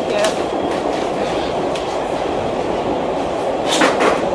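A subway car running, heard from inside the car as a steady rumble and rattle, with a few short rasping noises, the loudest near the end.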